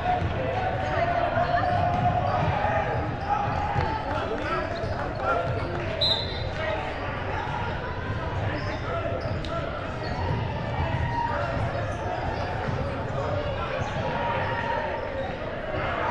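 Basketball bouncing on a hardwood gym floor during play, in a large gym hall, with voices from players and spectators throughout.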